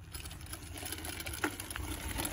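Child's Razor electric dirt bike with training wheels rolling off across gravel: a quiet crunch of tyres on loose stones with a faint motor hum.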